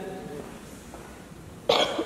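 A single short cough near the end, sudden and louder than the speech around it, after a brief pause in the talk.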